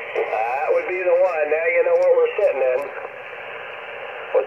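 Single-sideband voice from an Icom IC-718 HF transceiver's speaker: talk that sounds thin and cut off in the highs, over receiver hiss. The talk stops a little under three seconds in, leaving only the hiss.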